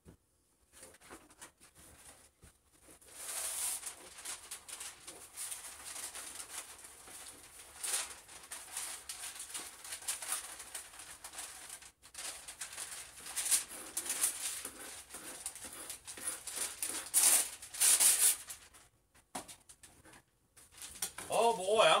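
A knife chopping cilantro finely in quick, repeated strokes. The chopping starts about three seconds in and stops a few seconds before the end.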